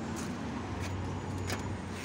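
Steady low hum of background noise with a few faint clicks.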